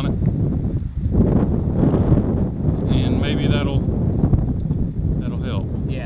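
Strong wind buffeting the camera microphone, a dense rumbling noise, with a couple of short stretches of a man's voice partly buried in it.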